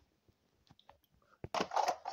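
Quiet toy-handling noises: a few faint clicks, then a sharper click and a short rustling rush near the end as plastic toys are moved about.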